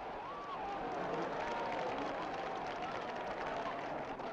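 A large cricket crowd in the stands making a steady din of cheering and shouting, with single voices calling out above it.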